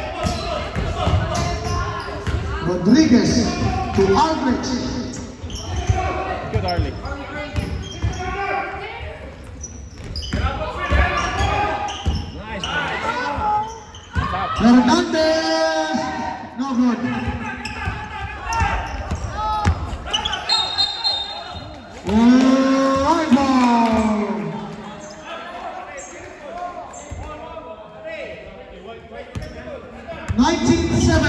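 A basketball bouncing on a hardwood gym floor, with voices shouting and calling out, echoing in a large hall. The loudest shouts come about halfway through and again a few seconds later.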